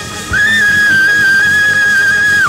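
A saxophone holds one long, high, loud note over the gospel band's music. It scoops up into the note about a third of a second in, then holds it steady.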